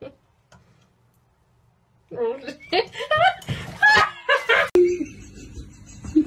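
A person's voice, chuckling and laughing with no clear words, starting about two seconds in and running for about two and a half seconds, then stopping abruptly.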